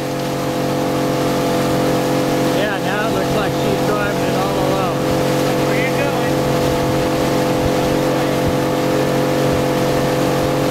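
Suzuki outboard motor running steadily, pushing a center console boat along at cruising speed, with the rush of water and wind over it. The level picks up during the first second or so, then holds.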